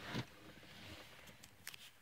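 Quiet car cabin: faint background noise, with a short soft sound about a quarter second in and a few faint clicks near the end.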